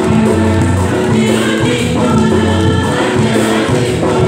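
A church choir singing a communion hymn, in a steady flow of sustained, held notes.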